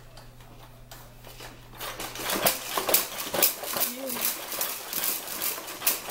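The plastic toys and frame of a baby's activity jumper clicking and rattling several times a second as the baby bounces and bats at them, starting about two seconds in. The baby gives a short coo.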